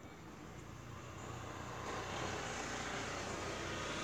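A steady rushing background noise, like distant engine or traffic noise, swells over the first two seconds and then holds.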